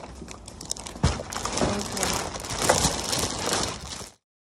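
Plastic takeout bag rustling and crinkling as it is handled close to the phone, with irregular clicks and a sharp knock about a second in.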